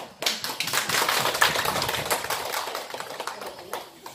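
Audience applauding, many people clapping at once; the clapping dies away near the end.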